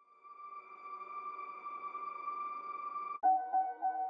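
Two synthesized tonal effect one-shots previewed back to back. First comes a steady, high held tone that swells in. About three seconds in it cuts off suddenly and a lower, slightly wavering tone takes over.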